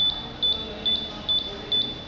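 Electronic beeper on the touch-screen lamp dimmer, giving short high-pitched beeps about two and a half times a second over a faint steady tone as the intensity is stepped down.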